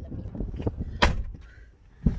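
Wind buffeting the microphone with an uneven low rumble, broken about halfway through by one sharp knock.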